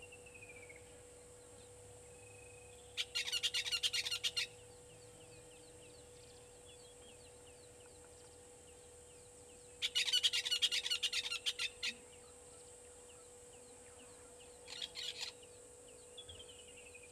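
Bird calls: three bursts of rapid, harsh repeated notes. The second burst is the longest and loudest, and the last is short, near the end. Under them run faint high chirps and, at the start, a faint falling whistle, over a steady faint hum.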